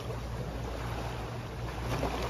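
Soft ocean waves washing against shoreline rocks in a steady wash of water, with a constant low wind rumble on the microphone.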